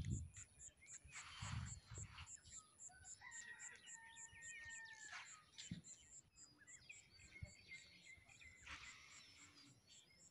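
Faint outdoor quiet with a distant bird giving one drawn-out pitched call of about two seconds, starting about three seconds in, over a faint high-pitched ticking about four times a second.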